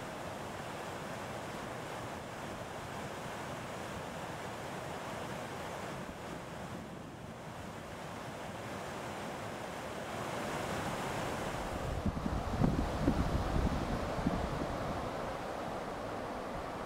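Steady rush of whitewater from a mountain creek cascading over boulders. About twelve seconds in, wind buffets the microphone in gusts for a couple of seconds.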